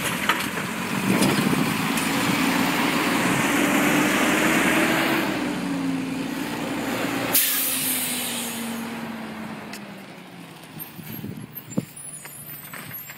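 Diesel engine of an automated side-loader garbage truck running as the truck drives past and moves away, its hum swelling and then sinking. About seven seconds in, a sudden loud air-brake hiss lasting about a second, after which the sound fades.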